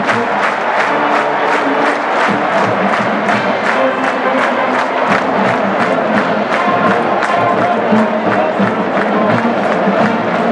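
Marching band playing with a fast, steady drum beat over a cheering stadium crowd.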